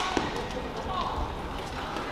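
Badminton rally: sharp clicks of rackets striking the shuttlecock, and a short squeak of shoes on the court floor about a second in, over a steady murmur of the hall.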